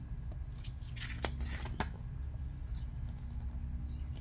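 A page of a large hardcover picture book being turned: a short paper rustle with a couple of light clicks about a second in.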